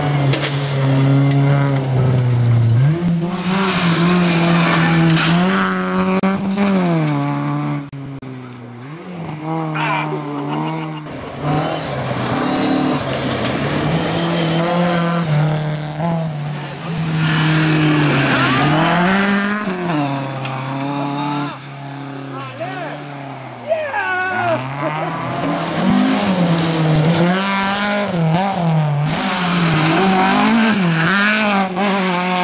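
Rally cars driven hard on a gravel stage, one after another. Their engines rev up and fall back again and again through gear changes and lifts.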